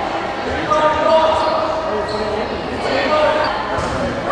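Players and spectators calling out in an echoing gymnasium, with a few sharp thuds of a volleyball being served and hit.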